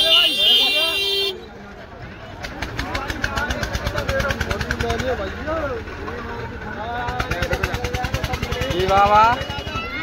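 Voices talking over a small engine that runs with a rapid, even beat from about two and a half seconds in. At the start, a high steady tone sounds and cuts off after about a second.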